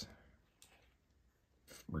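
A faint click about half a second in, as chrome trading cards are handled; otherwise quiet.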